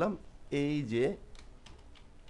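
A few light keystrokes on a computer keyboard in the second half, typing code, after a short spoken phrase.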